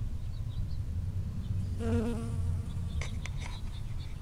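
A honeybee buzzing in flight close to the microphone: one short, steady hum of under a second about halfway through, over a low rumble.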